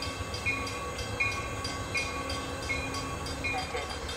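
Amtrak train standing at the station with its engine rumbling steadily, and a short ringing tone repeating about every 0.7 s, like the train's bell before it moves off.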